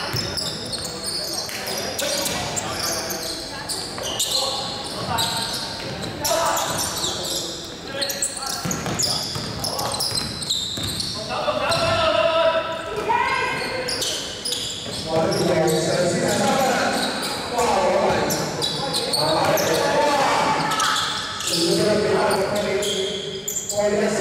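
Basketball bouncing on a hardwood gym floor during play, with voices of players and spectators shouting and talking in an echoing sports hall.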